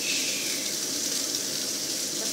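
Capelin frying in hot oil: a steady sizzle.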